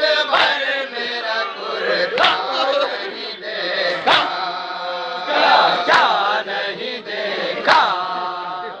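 A group of men chanting a noha in unison. A sharp unison chest-beat (matam) lands about every two seconds.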